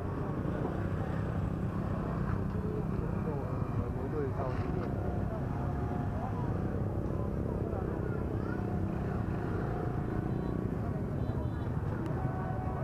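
Motorbike engines idling in a waiting crowd: a steady low rumble under many voices chattering at once.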